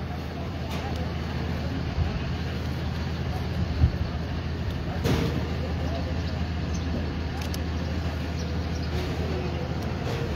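Steady low hum of an idling vehicle engine, with a few light knocks about two, four and five seconds in.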